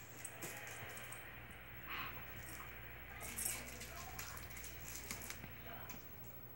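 Dog mouthing and chewing a plush toy, with faint light clinks like the metal tags on its collar jingling. The sounds are soft and scattered.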